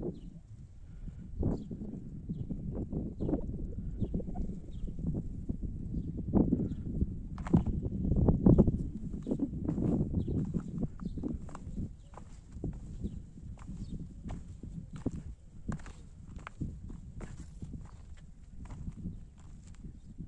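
Footsteps on rough, rocky limestone ground: irregular crunches and scuffs, several a second, over a steady low rumble.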